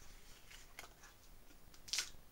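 Faint handling of a knife's cardboard card-backer packaging, with a few light clicks and a short, crisp rustle or tear of the card near the end as the knife is worked off it.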